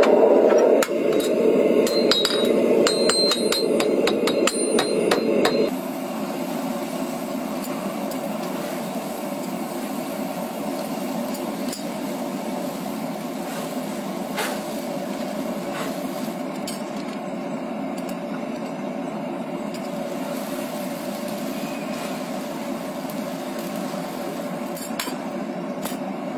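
A quick run of sharp metallic clinks and ringing, about two to five seconds in, from a red-hot steel horseshoe handled with tongs at a gas forge. Under it is a steady rushing noise that drops in level about six seconds in and then holds steady, with a few more single clinks.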